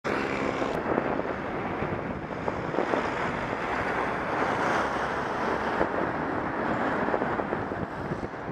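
Steady wind rush over the microphone of a camera moving along a road, mixed with road noise.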